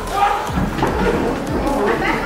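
Voices shouting with a few dull thuds from the wrestling ring as a wrestler is taken down onto the mat.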